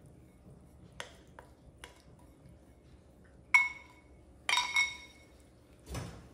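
Glass bowl clinking and ringing as a spoon scrapes flour-coated blueberries out of it into cake batter: a few light taps, then a sharp ringing clink about three and a half seconds in, the loudest sound, and a quick cluster of clinks about a second later.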